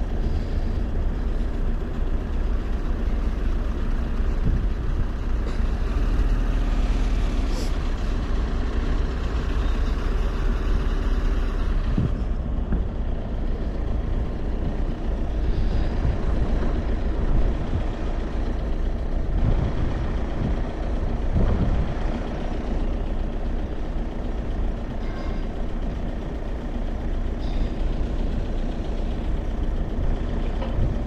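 Motor vehicle engines running nearby, a steady low rumble.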